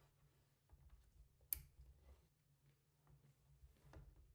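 Near silence with one short click about one and a half seconds in, as a cable is plugged into the back of a Synology DS920+ NAS, and a few fainter ticks of handling.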